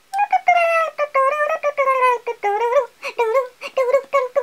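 A woman singing wordlessly in a high voice: a run of held notes that rise and fall, with short breaks between phrases.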